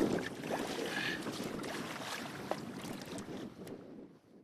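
Wind on the microphone and choppy water moving along a small fishing boat, a steady rushing noise that fades away near the end.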